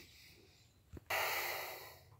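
Near silence, then about a second in a heavy breath out close to the microphone, starting suddenly and fading away over about a second.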